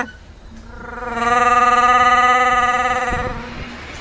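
A person's voice holding one long, steady sung note, starting about half a second in and fading near the end, with a brief low rumble just before it ends.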